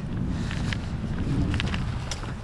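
Footsteps of a person walking on a street: a few faint scuffs over a steady low rumble of outdoor air and camera handling.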